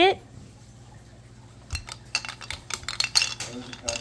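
Hard plastic blocks clicking and clattering against the frame of a Fat Brain Innybin shape-sorter cube as it is lifted and tipped. A quick, uneven run of light knocks begins about two seconds in.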